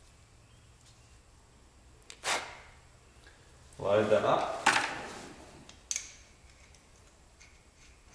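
Handling noises from an airless spray gun being put together: a brief scrape, then a louder rustle and two sharp clicks as the plastic tip guard holding a new tip is fitted to the gun.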